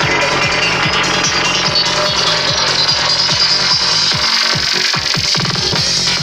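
Trance dance music played loud over a festival sound system, with a steady pounding kick drum and bass. About four seconds in, the kick and bass drop out briefly. A fast stuttering roll then builds, and the beat comes back just before the end.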